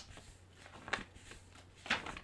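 Quiet room with a steady low hum and three soft rustling clicks about a second apart, the last the loudest: light handling noise.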